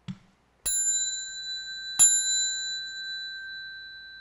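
A small Buddhist ritual bell struck twice, about a second and a half apart; the second strike is louder, and the high ring dies away slowly. A short dull knock comes just before the first strike.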